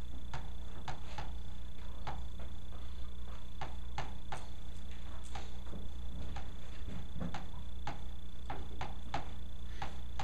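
Chalk tapping and scraping on a chalkboard while a chemical structure is drawn: short, sharp strokes a few times a second at uneven spacing. Under them runs a steady low hum with a faint high whine.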